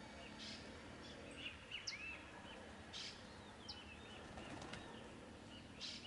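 Small birds chirping faintly: many short rising and falling chirps, with a brief rasping call about every two and a half seconds.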